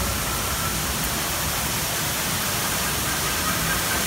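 A steady, even rushing noise with no breaks or distinct events.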